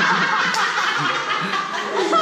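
Several people laughing and chattering over one another.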